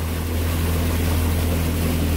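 A motorboat's engine running steadily as the boat moves across open water, a constant low hum with a noise of wind and water over it.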